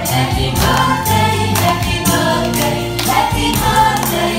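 A birthday song: group singing over music with a steady beat, and hands clapping along.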